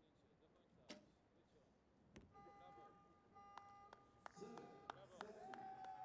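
Faint electronic beep tones at two pitches, lasting about a second and a half and broken by several sharp clicks, with single sharp clicks about a second and two seconds in. Faint voices begin near the end.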